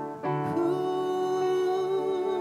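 Live ensemble with bowed cellos playing a slow instrumental passage of long held notes. A new chord comes in about a third of a second in.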